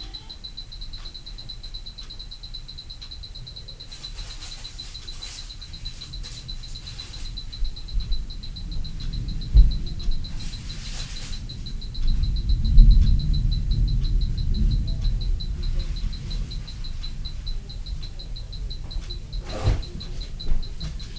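Low thuds and rumbling from a floor overhead, with a sharp thump about ten seconds in and a louder stretch of heavy thumping soon after, which the recorder takes for an upstairs neighbour stomping and dropping things on purpose. A faint, steady, high-pitched pulsing whine runs underneath.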